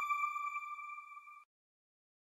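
A single sustained electronic ringing tone, the closing note of the channel's end-card ident, fading steadily and cutting off about one and a half seconds in.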